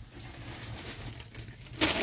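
Faint rustling and handling of a plastic shipping bag, ending in a short loud rustle just before speech resumes.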